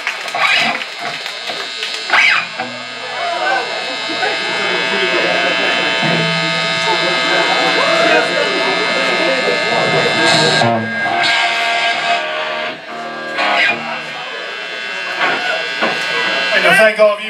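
Buzzing electric guitar amplifier with sustained, ringing guitar notes held for several seconds, the pitch changing about ten seconds in, while a guitarist adjusts his pedals between songs. Crowd chatter runs underneath.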